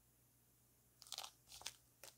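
Near silence, then about a second in a few faint crinkles and rustles from a hardcover book's glossy cover being handled and shifted in the hands.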